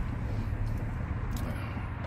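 Truck engine idling, heard from inside the cab as a steady low rumble, with a faint click about one and a half seconds in.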